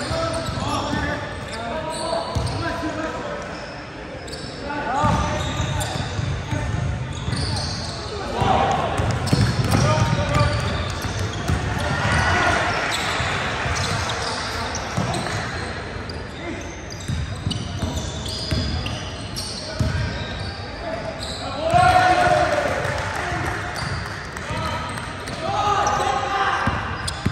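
Basketball dribbled and bouncing on the hardwood floor of a large gym during a game, under indistinct shouts and chatter from players and spectators.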